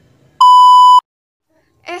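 A single loud, steady electronic beep, one high pure tone lasting about half a second and cutting off sharply.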